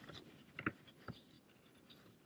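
A very quiet pause in speech with a few short, faint clicks: a close pair about half a second in and one about a second in.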